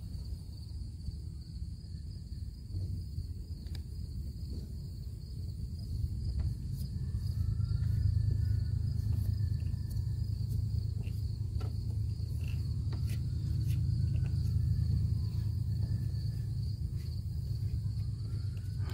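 Insects trilling steadily in an even, high drone, over a louder low rumble and a few light clicks.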